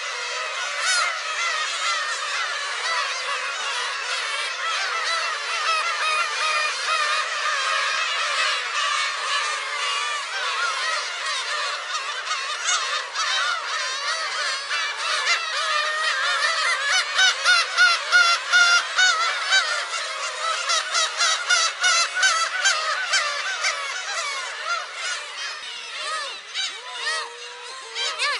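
A colony of black-tailed gulls calling, many birds at once in a dense, overlapping chorus. It grows louder a little past halfway, with quick runs of repeated calls, then eases near the end.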